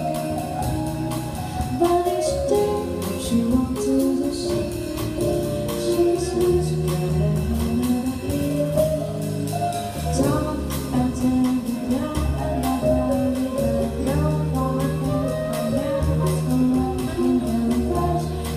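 Live small jazz band: a woman singing into a microphone over upright bass, keyboard and a drum kit keeping a steady beat.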